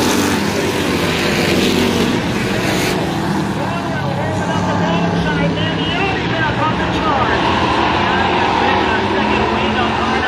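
A pack of street stock race cars running at racing speed. Their engines are loudest in the first three seconds as the cars pass close below the grandstand, then fade but keep running as the pack moves away down the far straight.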